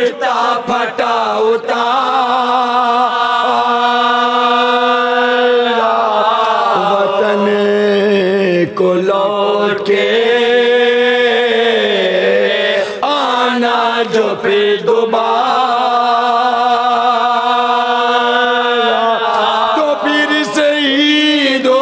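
A group of men chanting a slow Shia mourning lament together, one lead voice at a microphone with the others joining in, on long drawn-out held notes.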